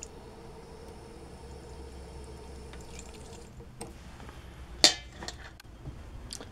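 Tap water running in a thin stream into a stainless steel mixing bowl, a steady pouring sound with a faint ringing tone, shut off about three and a half seconds in. A single sharp metal clink follows near the end.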